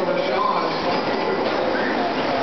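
Electric RC trucks racing on a dirt track: a steady mix of motor and gear whine and tyre noise, with a brief rising whine near the end as one accelerates.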